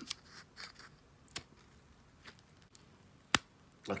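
Plastic screw cap twisted off a protein milk bottle and its seal pulled away: a few faint crinkles and small clicks, then one sharp snap a little after three seconds in.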